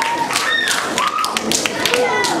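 Scattered hand claps, the tail of an audience's applause, over children's voices talking.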